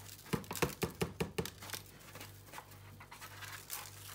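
Granulated sugar poured from a paper bag into a stainless steel saucepan, the bag crinkling as it is shaken empty: a quick run of crackles in the first second and a half, then lighter rustling.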